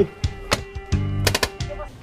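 Magfed paintball marker firing: one shot about half a second in, then a quick burst of three or four shots a little over a second in, over background music.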